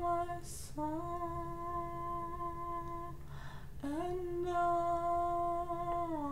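A woman humming a slow worship-song tune in long held notes, each kept at a steady pitch, with a breath drawn about half a second in and another just after three seconds.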